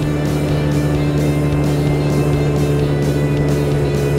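Kymco Urban 125 scooter's 125 cc single-cylinder engine held at high revs near its top speed of about 90 km/h, a steady unchanging drone, under background music with a light beat.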